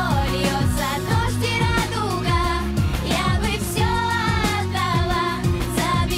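Pop song playing: a woman singing a melody over a steady drum beat with deep kick drums and backing instruments.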